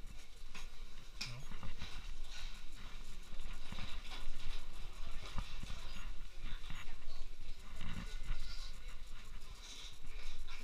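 Irregular footsteps and luggage clatter on a hard lobby floor, with low voices talking.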